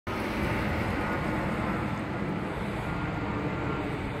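Steady low rumble of outdoor background noise by a road, heaviest in the bass, with no distinct events.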